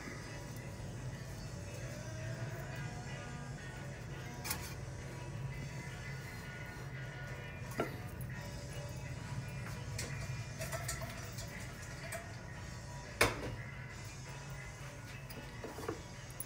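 Quiet background music with a steady low undertone, broken by a few short knocks, the loudest about thirteen seconds in.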